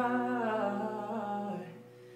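A long sung or hummed note with a wavering pitch over the last guitar chord left ringing, both fading away to quiet near the end; no strumming.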